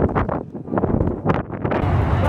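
Wind buffeting the camera's microphone in uneven gusts, with lulls about half a second and a second and a half in.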